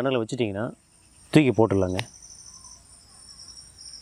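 Steady high-pitched insect trilling: several thin tones held together without a break. A man speaks Tamil over it in the first two seconds.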